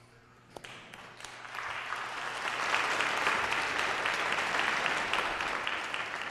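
Congregation applauding: a few scattered claps at first, swelling within about two seconds into steady applause.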